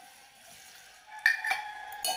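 A metal utensil clinks twice against a metal cooking pot a little over a second in, with a thin ring that fades.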